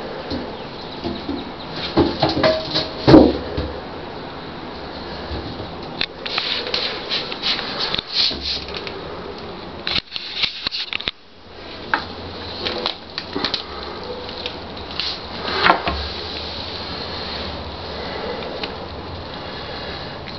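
Scattered knocks, scrapes and rustles over a steady hiss, with the loudest thump about three seconds in.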